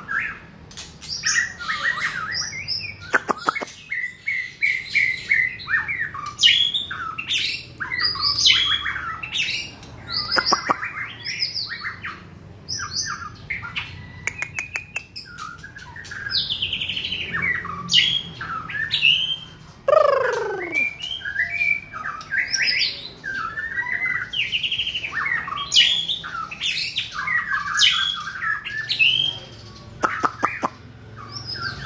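A caged songbird singing continuously: a long, varied run of whistled phrases, chirps and warbles. About twenty seconds in, one loud whistle sweeps steeply down in pitch.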